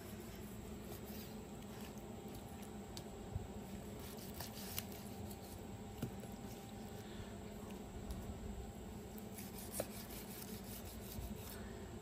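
Faint sounds of a knife slicing through seared ribeye steaks on a wooden cutting board, with a few soft clicks scattered through it over a low steady background hum.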